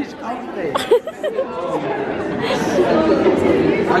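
Indistinct chatter of several people talking in a large indoor hall.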